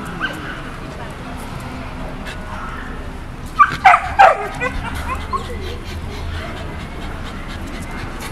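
A beagle giving a quick run of three high, whining yips about halfway through, each falling in pitch.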